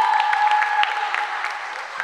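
Sneakers squeaking and feet pattering on an indoor basketball court during play, echoing in the hall. A long squeal fades out about one and a half seconds in, among many short sharp clicks and squeaks.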